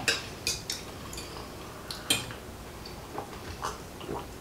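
Knife and fork on glass dinner plates: scattered light clinks and taps, about half a dozen over a few seconds, as food is cut and picked up.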